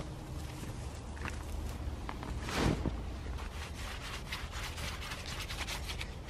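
Gloved hands rubbing a cloth over a woven wicker planter to shine it up: a low, scratchy rubbing made of many small crackles, with one louder rustle about halfway through.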